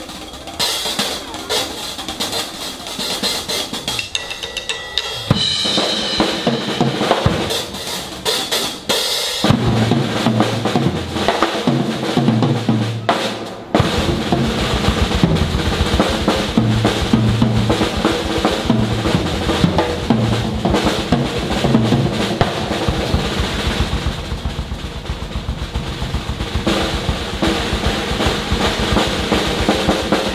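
Brass band playing live, led by a drum kit keeping a busy beat on snare and bass drum. Pitched low notes come in about ten seconds in, and the drums settle into a steady fast beat a few seconds later.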